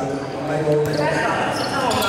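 Basketball dribbled on a wooden gym floor, with people's voices echoing in a large hall.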